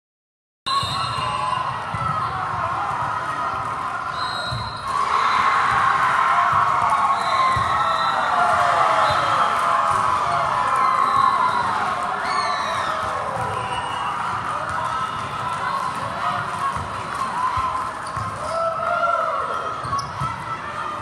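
Busy indoor volleyball court: athletic shoes squeaking on the hard court floor and balls thumping, over a crowd's chatter and calls in a large, echoing hall. The crowd noise swells about five seconds in and stays louder for several seconds.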